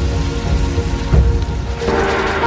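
Heavy rain falling, with held music tones underneath and two low thuds about a second apart.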